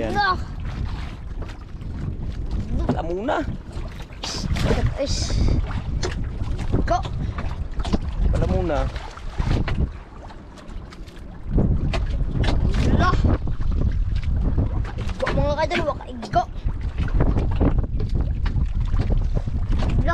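Wind buffeting the microphone aboard a small outrigger boat on choppy sea, a steady low rumble that drops briefly about halfway through. Short snatches of voices come through now and then.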